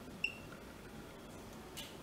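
A single short, high electronic beep about a quarter second in, over quiet room tone, with a brief soft hiss just before the end.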